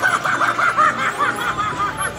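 Animatronic clown Halloween prop cackling through its built-in speaker: a rapid, high-pitched string of 'ha-ha' laughs, several a second.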